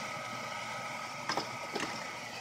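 Two short clicks about half a second apart, a little over a second in, over a steady hum with a faint high whine.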